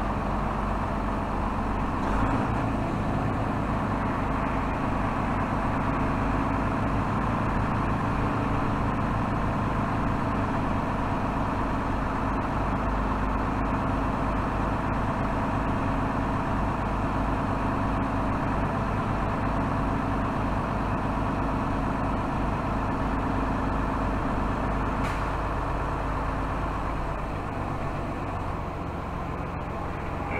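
Heavy truck's diesel engine running steadily under light load, heard from inside the cab as the truck creeps along at low speed. Near the end the engine note drops and gets a little quieter as it slows.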